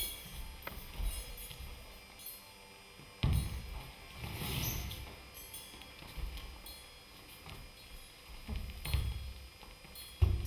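Knocks and thuds of a metal-pipe stage frame being moved and set down, the loudest about three seconds in, with a brief tinkling of hanging metal utensils soon after.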